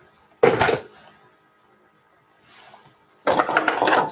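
Handling noise at a sewing table as a small iron and fabric scraps are moved about: a short loud clatter about half a second in, then a longer rustle near the end.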